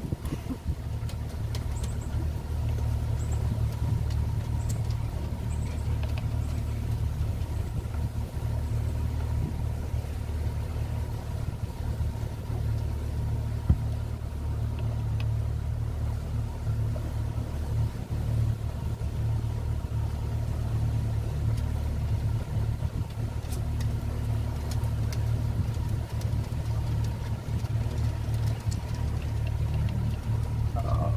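A boat's outboard motor running at idle speed through a no-wake zone, a steady low drone. There is one brief knock about halfway through.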